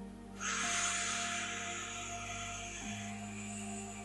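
A long, slow breath of a breathing exercise, heard as a hiss that starts suddenly about half a second in and fades away over about three seconds. Soft sustained background music plays underneath.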